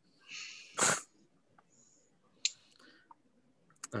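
A short nasal laugh: a breathy exhale, then a sharp puff of air into a headset microphone about a second in. A faint click follows.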